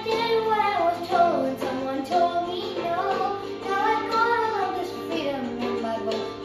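A young girl singing a ballad into a handheld microphone, her voice sliding through long held notes.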